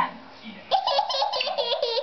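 A young child giggling: a high-pitched laugh in rapid pulses, starting less than a second in and carrying on.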